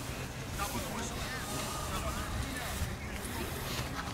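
Distant, indistinct voices of players and spectators across a sports field, over a steady low background rumble.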